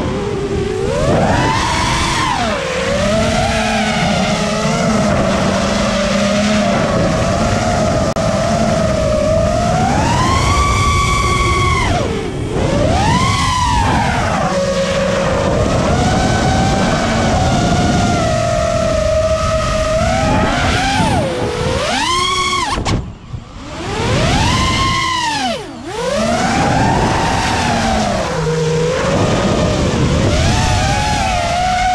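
Brushless motors and propellers of a 5-inch 6S FPV quadcopter in freestyle flight, their whine rising and falling in pitch with the throttle. Near the end the sound briefly cuts out twice as the throttle is chopped, then climbs back.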